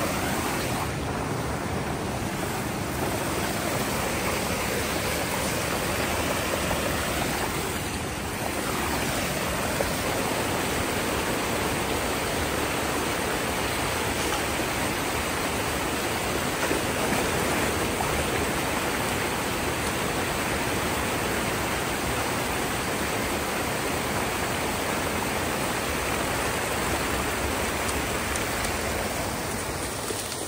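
Water rushing steadily through a breach in a beaver dam and splashing down in a small foaming waterfall.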